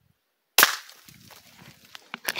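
A single .22 rifle shot: one sharp crack about half a second in, followed by quieter, irregular rustling.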